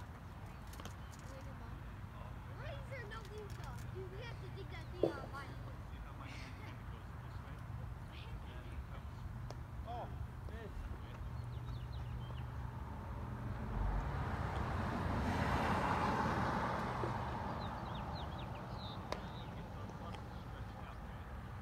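Distant children's voices calling across a ball field, with a single sharp clack about five seconds in, like a ball hitting a glove. Past the middle, a car passes on the road, swelling and fading over about five seconds.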